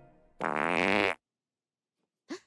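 A cartoon fart sound effect: one loud, pitched blast lasting under a second that cuts off abruptly. It is a fart that goes off like an alarm clock in the morning.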